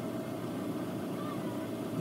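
Car engine idling, heard from the driver's seat as a steady low rumble with a faint steady tone above it.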